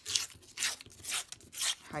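A strip of paper torn along the edge of a steel ruler in about four short rips, roughly half a second apart.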